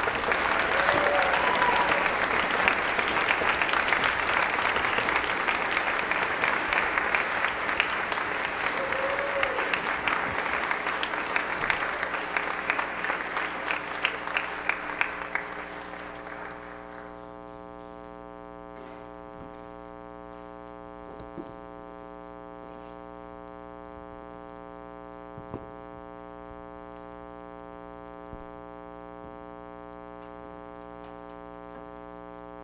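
Audience and orchestra members applauding for about sixteen seconds, thinning out and stopping, after which only a steady electrical hum and a few faint knocks remain.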